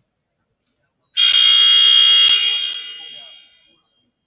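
Gym scoreboard buzzer sounding once about a second in: a loud, steady, high tone held for about a second, then dying away over the next second and a half. It marks the end of the break between quarters, calling the teams back onto the court.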